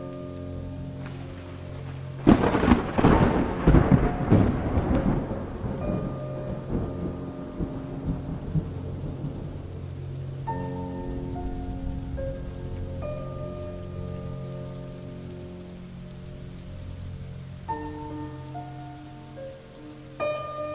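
A sudden loud thunderclap about two seconds in, rumbling away over the next several seconds, over steady falling rain.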